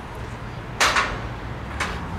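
Construction-site background: a low steady rumble, with a short hiss about a second in and a fainter one near the end.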